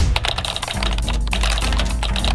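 Rapid typing on a computer keyboard, a fast clatter of keystrokes, over music; a deep bass line comes in under it about three-quarters of a second in.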